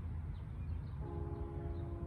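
Distant horn of an approaching LIRR DE30AC diesel locomotive, a multi-note K5LL chord, sounding once faintly for just over a second about a second in, over a low steady rumble.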